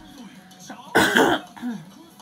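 A person coughs once, close to the microphone, about a second in, a short loud harsh burst over faint television audio.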